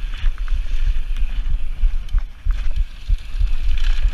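Onboard sound of a downhill mountain bike running fast over a gravel trail: wind buffets the camera microphone in low rumbling gusts, with scattered clicks and rattles from the bike and the stones under the tyres.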